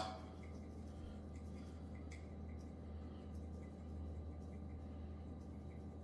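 Quiet room tone with a steady low hum and a few faint soft ticks and taps, from a seasoning shaker being shaken over raw bacon strips.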